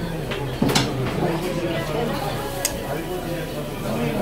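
Indistinct chatter of voices in a busy restaurant, with two sharp clinks of tableware, one under a second in and another near three seconds.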